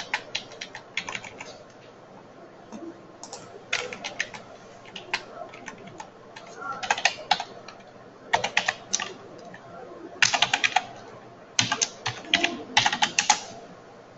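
Computer keyboard being typed on in short bursts of quick keystrokes, about seven bursts separated by brief pauses.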